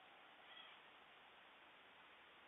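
Faint steady hiss with one short, high-pitched animal call about half a second in.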